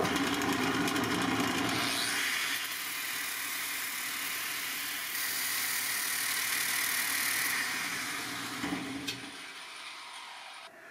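Angle grinder with an abrasive disc grinding a steel pommel blank that spins in a drill press chuck, giving a steady harsh grinding hiss over the hum of the motors. The grinding dies down near the end.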